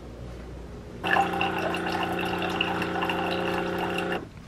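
Keurig single-serve coffee maker brewing: about a second in its pump starts with a steady hum, and hot coffee gurgles and streams into the ceramic mug.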